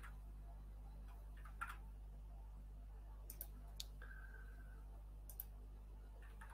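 A handful of faint, sharp clicks from a computer mouse, one about a second and a half in, a quick cluster near the middle and one near the end, over a steady low electrical hum.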